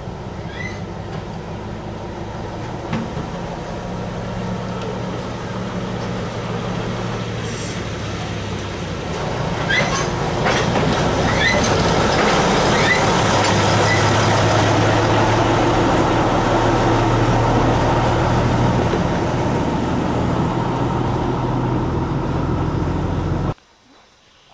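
Drewry diesel shunter running steadily as it comes slowly closer and passes, its engine growing louder about nine seconds in. There are a few sharp clicks soon after, and the sound cuts off suddenly near the end.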